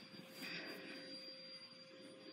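Quiet room tone with faint rustling of fabric and handling noise as a toy is moved over a blanket, swelling slightly about half a second in, under a faint steady high electronic tone.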